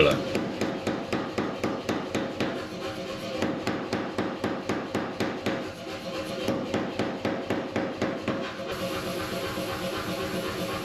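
A red-hot round steel bar being forged on an anvil, struck in rapid, even hammer blows of about four a second as the stock is broken down.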